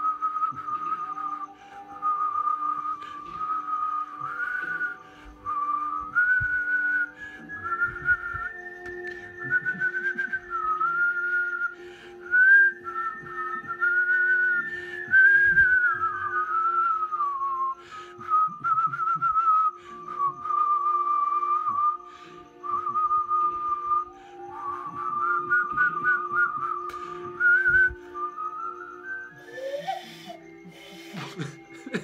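A man whistling with pursed lips: a wandering tune of held notes, slides and quick warbling trills, in phrases broken by short pauses. Near the end the pitch climbs in a long rising slide.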